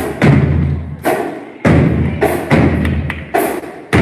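Large drums struck in a slow, heavy beat of single hits, about two a second. Each hit rings out and fades in the reverberant hall.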